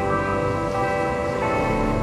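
Organ music: sustained chords held steady, moving to a new chord about a second and a half in.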